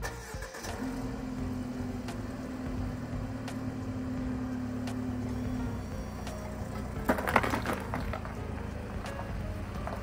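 A Mercedes-Benz SUV's engine running steadily. About seven seconds in, there is a brief crunch as the car rolls over gravel and flattens a pair of metal card tins under its tyres.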